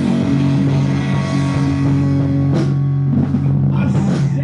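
Live rock band playing an instrumental passage with no singing: two electric guitars holding chords over a drum kit, with two sharp hits, about two and a half seconds in and just before the end.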